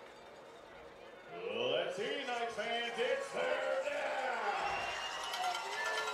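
Distant, echoing voices carrying across a stadium, starting about a second in, in long drawn-out syllables, over faint open-air stadium background.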